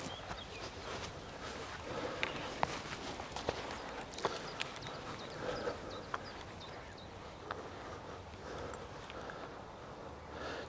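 Faint footsteps on grass with scattered, irregular light clicks over a soft outdoor background hiss.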